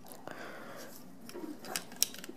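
Faint handling of plastic Lego pieces as a small brick-built car is put back together, with a few light clicks near the end.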